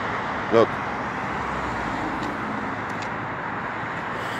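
Steady road traffic noise from cars driving along the street.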